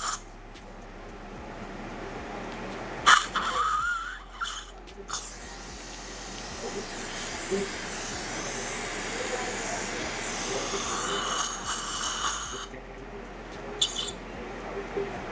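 Dental suction tip hissing steadily in the patient's mouth during a tooth extraction, growing slowly louder and then cutting off near the end. About three seconds in comes a sudden loud slurp with a short rising squeal.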